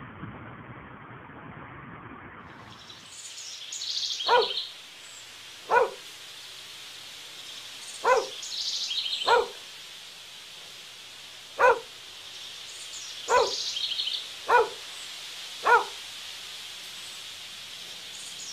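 A dog barking single barks, eight in all, spaced one to two seconds apart, with birds chirping in short bursts between them. Before the barks start, for about three seconds, there is only a dull outdoor hiss.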